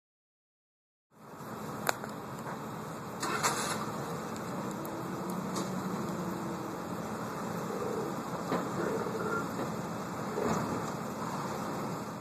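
Steady vehicle engine and machinery noise, as from idling trucks and ground equipment, with a few sharp knocks and clanks scattered through. It starts about a second in.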